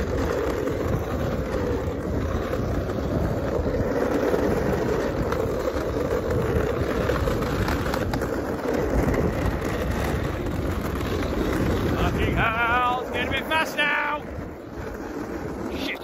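Skateboard wheels rolling fast downhill on tarmac, a steady rumble mixed with wind on the microphone. About twelve seconds in the rumble eases and a wavering voice is heard for a couple of seconds.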